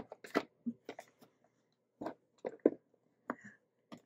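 A small cardboard box of trivia cards being handled, squared up and closed, with a few scattered light taps and clicks.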